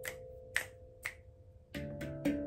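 A handpan note dying away under three sharp finger snaps about half a second apart, then a fresh handpan note struck by hand near the end.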